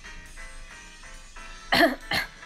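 A person gives a short, loud cough near the end, over quiet background music.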